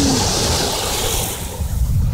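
Ocean surf washing up the sand, a steady hiss of water with wind rumbling on the microphone.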